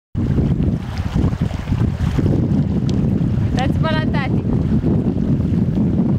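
Wind buffeting the microphone: a loud, steady low rumble. About three and a half seconds in, a brief high-pitched call sounds over it.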